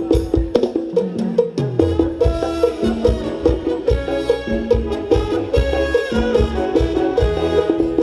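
Thai ramwong dance band playing upbeat music with a steady, regular drum beat. A bass line slides down about a second in, then held chords come in over the beat.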